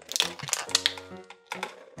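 Light plastic clicks from small plastic toy figures and a clear plastic blister pack being handled, a quick run of them in the first second and another near the end, over background music with sustained notes.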